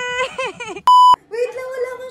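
A short, loud, high-pitched beep tone about a second in, edited in between clips. Around it is a high-pitched, excited voice: a held note and quick chatter before the beep, and a wavering drawn-out voice after it.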